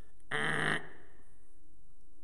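A man's short, buzzy vocal exclamation, held on one pitch for about half a second shortly after the start, then quiet room tone.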